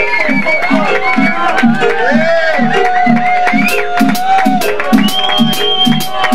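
Roots reggae band playing live, a steady low pulse about twice a second under keyboard and wavering voices, with crowd noise.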